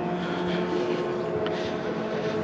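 A steady engine hum at a constant pitch over open-air background noise; its lowest tone drops out a little under halfway through.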